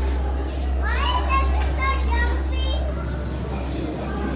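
A young child's high-pitched voice: short excited calls with rising pitch, from about a second in until near the three-second mark. Underneath runs a steady low hum.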